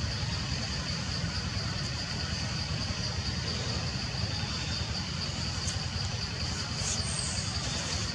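Steady outdoor ambience: a constant low rumble with a hiss over it, and a thin high-pitched buzz held on one note throughout. A brief faint chirp comes near the end.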